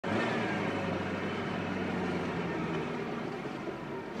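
Steady engine and road noise heard from inside a moving van: a low, even hum under a hiss, easing slightly toward the end.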